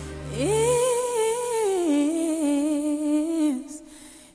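A single voice humming a slow, wordless melody: it swoops up to a held note, steps down midway and ends shortly before the end. A low steady drone underneath stops about a second in.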